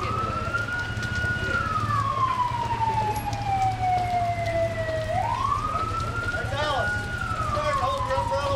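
Police car siren sounding a slow wail: the pitch rises, holds high, then falls slowly, twice over. Steady rain hiss runs underneath.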